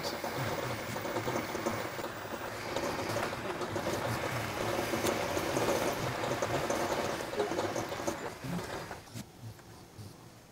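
Rockwell 10-inch metal lathe running while a cutting tool roughs down a bar of cold-rolled steel, heard sped up. The sound fades away near the end.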